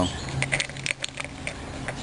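A few light metallic clicks in the first second, over a faint low hum, as a steel flywheel puller is screwed by hand into a motorcycle magneto flywheel.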